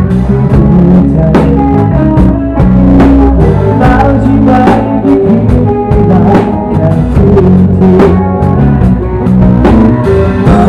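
A band playing a pop-rock song with the drum kit up front: snare and cymbal hits cutting across a full mix of bass, guitar and keyboard.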